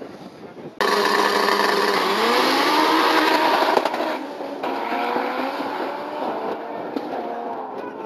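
Two drag-racing cars launching at full throttle from the start line, their engines running loud and rising in pitch as they accelerate down the strip. Less than a second in, the sound starts abruptly and loudly; it becomes quieter and duller about four and a half seconds in as the cars pull away.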